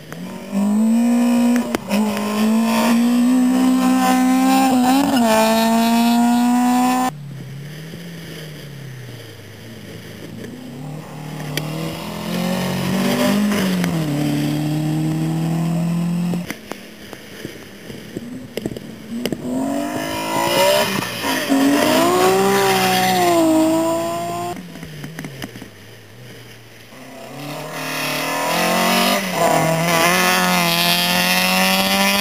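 Rally car engines revving hard as one car after another accelerates flat out, each engine climbing in pitch through the gears. There are several separate passes, each cut off abruptly: about seven seconds in, near the middle, and about two-thirds of the way through.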